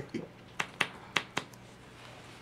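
Sleeved trading cards being put down and tapped on a tabletop: about four sharp clicks within the first second and a half.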